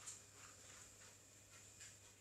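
Near silence: room tone, with a few faint soft rustles near the start and again near the end.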